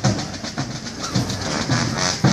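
Marching band drums playing a steady march beat: a bass drum about twice a second under quick, even snare strokes.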